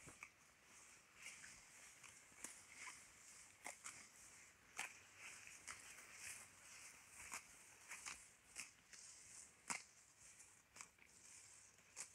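Cattle grazing tall Mombaça grass: faint, irregular crunching snaps as mouthfuls of grass are torn off and chewed, about one or two a second.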